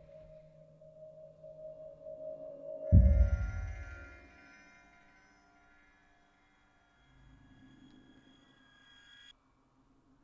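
Quiet cinematic sound-design drones: a steady pitched drone, then a deep muffled kick about three seconds in marking a change of shot, after which higher ringing tones take over and cut off suddenly near the end over a faint low drone.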